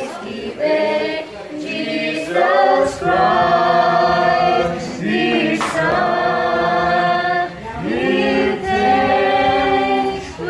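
A small group of young men and women singing together, holding long notes in phrases of a few seconds each with short breaks between them.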